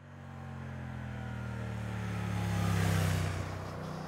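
Motorcycle engine running at a steady note as the bike approaches and passes. It grows louder to its loudest about three seconds in, then falls away.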